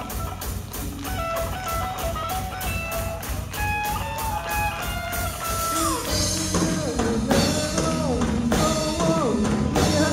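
Live rock band playing an instrumental passage: electric guitar lines with notes that slide down in pitch, over bass and a steady drum-kit beat with cymbals. It grows a little fuller in the second half.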